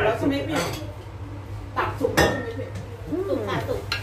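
Plates and cutlery clinking and clattering as food is served and eaten, in a series of sharp knocks with the loudest clatter a little after two seconds in.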